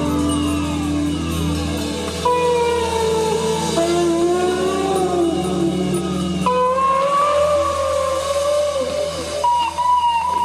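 Ambient instrumental music: an electric guitar lead plays long, sustained notes that slide and bend in pitch, with falling glides near the start, over a steady low bass drone.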